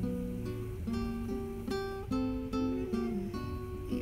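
Background music: an acoustic guitar playing a melody of plucked notes, a new note about every half second.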